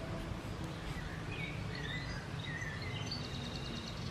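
Small birds chirping in short phrases of quick, gliding notes, over a steady low background rumble.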